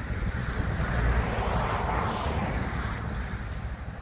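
Wind buffeting the microphone with a low, flickering rumble, and a broad rushing noise that swells about two seconds in and then fades.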